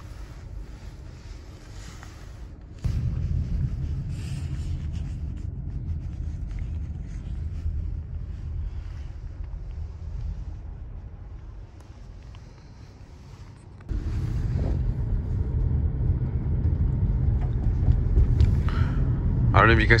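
Low, steady rumble of a Nissan car's engine and tyres heard from inside the cabin while driving. It is quieter at first, jumps louder about three seconds in, eases off briefly, then jumps louder again about two-thirds of the way through.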